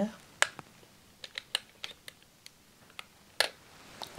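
Small, sharp clicks and taps of a reusable tonometer head being handled and seated in the holder of a Perkins hand-held applanation tonometer. There are about ten, scattered irregularly, with the sharpest one near the end.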